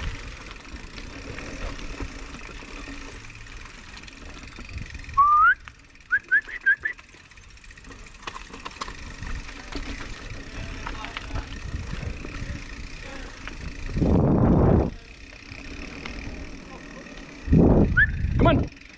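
Mountain bike rolling down a dirt trail, with steady tyre noise and rattle over roots and rocks. About five seconds in comes a loud rising whistle, then four short rising whistled chirps; a loud rushing burst follows about fourteen seconds in.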